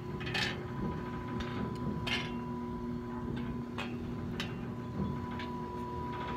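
Oilfield pumping unit running: a steady mechanical hum with several irregular ticks and clicks.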